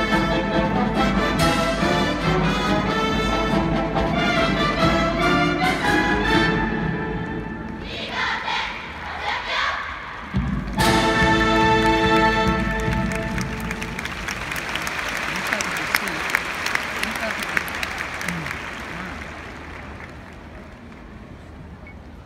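High school marching band playing brass and drums, dropping back around seven seconds in, then a loud held brass chord that ends the piece. Applause from a large crowd follows and slowly fades.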